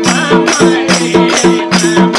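Live Nepali folk dance music: madal hand drums played in a fast, even rhythm, with short pitched drum tones and an accompanying melody.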